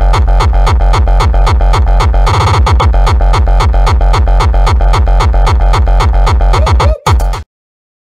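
Electronic dance music on a synthesizer and drum machine: a fast, evenly pulsing beat with heavy bass and a brief rising sweep a couple of seconds in. It cuts off abruptly near the end.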